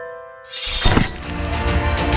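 The last chime tones of a logo jingle ring out and fade. About half a second in, a noisy whoosh-and-crash transition effect rises and peaks, opening into intro music with a heavy low beat.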